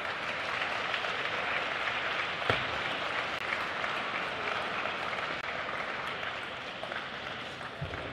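Crowd applause running steadily through a table tennis rally, with the light clicks of the ball off rackets and table heard through it and one sharper knock about two and a half seconds in.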